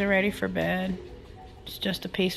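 A woman's voice in short sing-song phrases with a wavering, gliding pitch, one lasting about a second and another starting near the end, with a quiet gap between.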